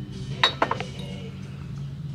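Glassware clinking: a sharp glass-on-glass clink about half a second in, followed by a couple of fainter clinks, as a glass lid or dish is handled and set down among other glass pieces.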